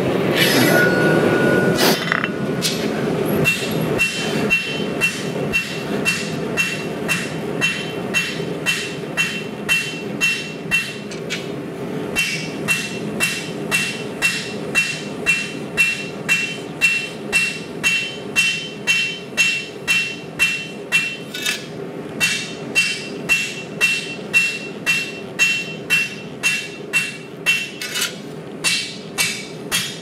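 Rounding hammer striking red-hot 80CrV2 blade steel on an anvil, hand forging at a steady rhythm of about two blows a second, with a brief pause near the middle. Each blow carries only a short high ring, because the anvil is siliconed to its steel stand and the floor and doesn't sing. A rushing noise comes first, over the opening couple of seconds.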